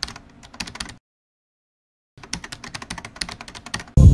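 Keyboard typing sound effect: quick runs of keystroke clicks for about a second, a silent pause, then a second run from about two seconds in, cut off as loud music begins at the very end.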